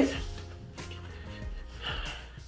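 Quiet background music playing under the scene, with faint sustained notes.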